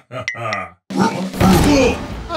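A cartoon character's wordless grunting voice over background music, with two quick high sound effects in the first half and a louder, noisier stretch in the second half.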